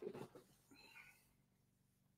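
Near silence: room tone, with faint soft breath or mouth sounds in the first second.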